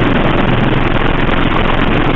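Loud, steady rushing noise with a faint low hum underneath, covering the whole sound track.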